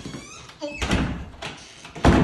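Wooden closet door banging as it is pushed shut and held, with heavy thumps about a second in and a louder bang at the very end.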